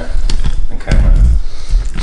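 Wet squelching and slapping of hands rubbing oil and spices into raw venison steaks on a plate and turning them over, with a heavy dull thump about a second in and a few short clicks.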